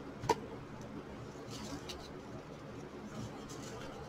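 A single sharp click near the start, then faint rustling as satin ribbon is pulled and laid flat on a table.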